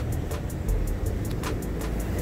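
Low steady hum of a vehicle engine, with music playing under it and short ticks over the top.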